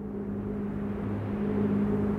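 Steady low engine drone, a hum of a few low pitches over a rushing haze, slowly growing louder.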